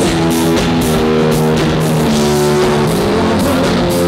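Rock band playing live at a steady loud level: electric guitar and electric bass holding and changing sustained notes over a drum kit with continuous cymbal wash.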